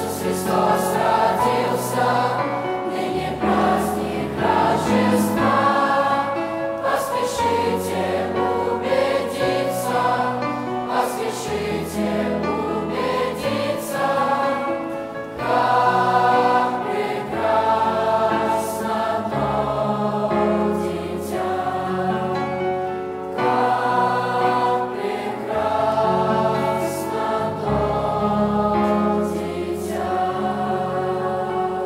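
Mixed choir of young men and women singing a Russian Christmas hymn in parts, with sustained low bass notes under the melody, phrase after phrase.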